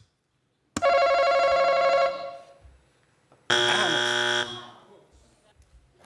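Game-show face-off buzzer sounding twice: two electronic tones about three seconds apart, each about a second long and fading out, the second different in tone from the first.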